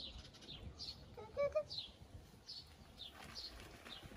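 Garden birdsong: a small bird repeating short, high, falling chirps about twice a second. A brief, louder, lower pitched call sounds once, a little over a second in.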